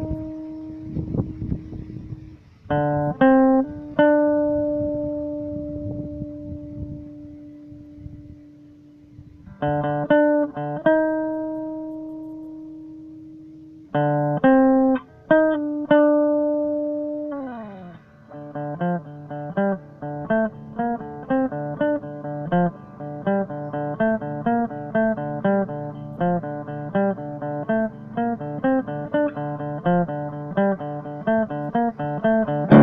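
Electric guitar, a B.C. Rich Warlock through a small Marshall MG10 practice amp, playing a riff. Several chords are struck and left to ring out. A little over halfway through a note slides down in pitch, and the riff turns to a fast, even run of quick repeated notes.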